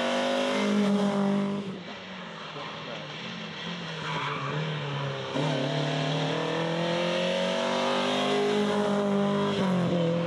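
Rally car engine running hard under load. The revs and loudness drop about two seconds in, pick up again a little past five seconds and climb slowly, then fall suddenly just before the end, as at a gear change.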